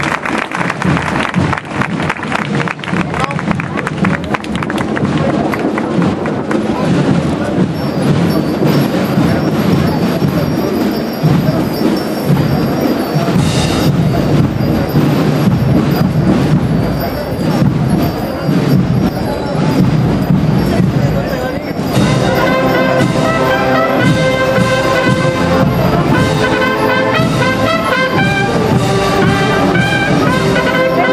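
Applause and crowd noise at first, giving way to a wind band playing a Holy Week processional march; the full brass comes in strongly with sustained chords about two-thirds of the way through.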